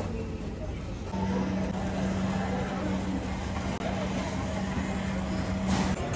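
A steady low machine hum holding one tone, starting about a second in and cutting off abruptly near the end.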